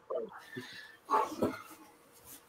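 Soft, brief laughter: a couple of short chuckles, the clearest about a second in.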